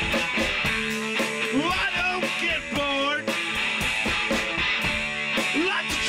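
A live rock duo of drum kit and electric guitar playing an instrumental passage: steady drum strokes under guitar lines, with some notes sliding up and down in pitch.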